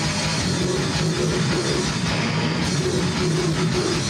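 A rock band playing live: electric guitar and drum kit, loud and dense, with a fast steady beat.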